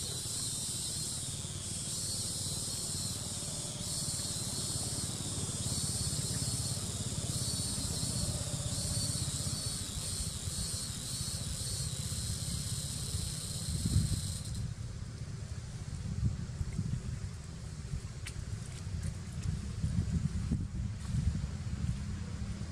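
A high, pulsing insect chorus that cuts off abruptly about two-thirds of the way through, over a steady low rumble. A few knocks come in the second half, the loudest near the cut-off.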